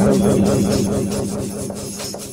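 An electronic transition sound effect: a held low synth tone with a repeating sweeping pattern over it, loudest at the start and slowly fading.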